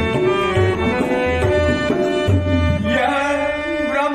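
Tabla beating a rhythm under a harmonium holding sustained chords, a traditional Ramlila accompaniment.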